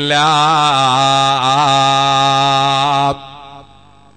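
A man's voice chanting one long melodic phrase, in the manner of an Islamic recitation, its pitch wavering up and down. It cuts off abruptly about three seconds in.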